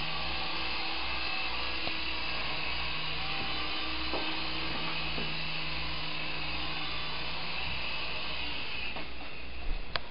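Syma S107G micro RC helicopter's small electric coaxial rotor motors whirring steadily in flight, then stopping about eight seconds in as it sets down.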